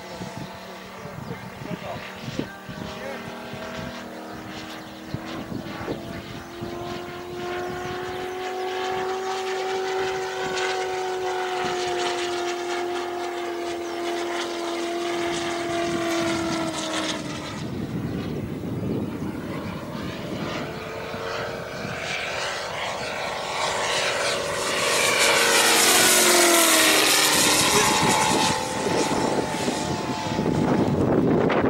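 Large-scale RC P-47's 250cc Moki five-cylinder radial engine turning a four-bladed propeller in flight. Its steady note drifts slowly in pitch as the plane circles. It grows louder to a close pass near the end, where the pitch drops as it goes by.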